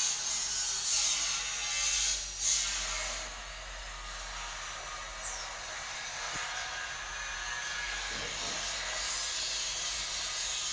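Hand-held electric drill working into a plywood cabinet shelf in the first two or three seconds, ending with a short loud peak, followed by a steadier background workshop noise.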